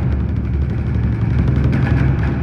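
A steady low rumble with no distinct drum strikes.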